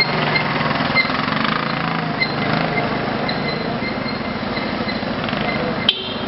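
Street traffic noise, with a nearby van's engine running as it creeps forward; its low hum fades about halfway through. A sharp click comes near the end.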